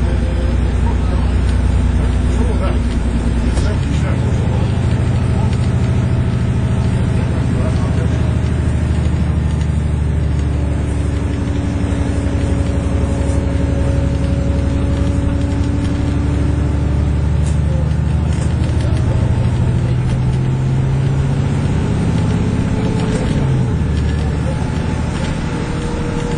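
Alexander Dennis Enviro400 MMC double-decker bus heard from inside the passenger saloon, its diesel engine and drivetrain running steadily under way. The engine note changes about four seconds in, then dips and climbs again near the end.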